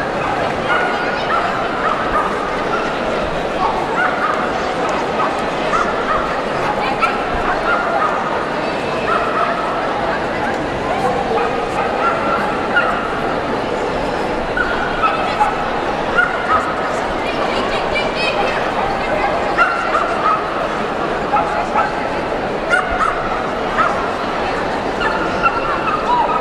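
A dog barking again and again in short, high yips, about one or two a second, over the steady hubbub of an indoor arena crowd.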